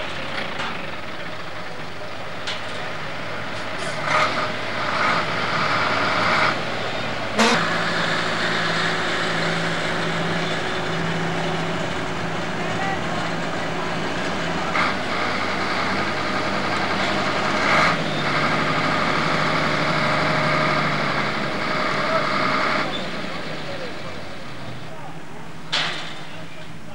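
Heavy diesel truck engine running steadily, with a few sharp knocks.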